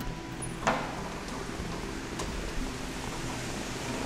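Faint steady background noise, with a soft click about a second in and a fainter one a little after two seconds, as the hydraulic-hinged aluminium door is swung open.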